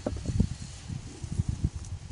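Gloved hands digging and scraping through wood-chip mulch and soil, making irregular soft crunches and rustles.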